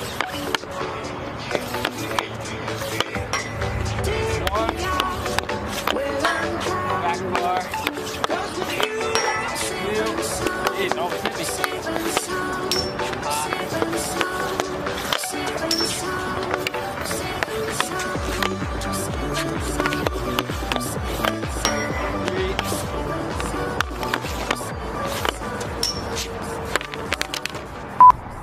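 Background music with a steady beat and a melody running throughout, with a pulsing bass coming in about two-thirds of the way through.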